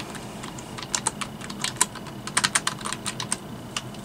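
Typing on a computer keyboard: a quick, irregular run of key clicks that starts about a second in, comes thickest in the second half and stops just before the end.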